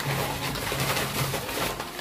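Paper answer slips rustling as they are stirred about in a bag for a prize draw, with a low hum underneath that comes and goes.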